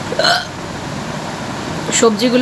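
A single short hiccup from a woman just after the start, then only a steady room hum.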